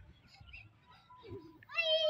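A young child's high-pitched squeal, wavering in pitch, about a second and a half in, as she comes down a plastic tube slide.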